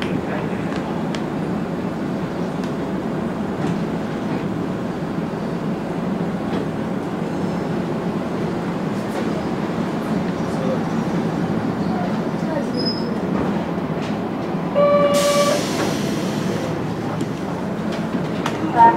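Kobe Electric Railway 1100-series electric train running on the rails, heard from inside the cab: a steady rumble of wheels and running gear as it pulls out of a station. About fifteen seconds in, a short horn blast with a hiss of air sounds over the running noise.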